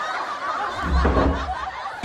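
Laughter, with a low, dull thump about a second in as a wooden door is pushed shut.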